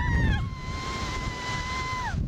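Thrill-ride riders screaming: two women's screams overlap at first, then one holds a long, steady high scream that falls away at the very end. Wind rumbles on the microphone underneath.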